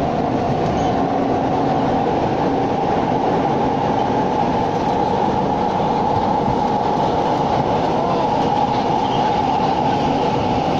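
Metro train carriage heard from inside while running: a steady, loud rumble of wheels and running gear with a faint hum over it.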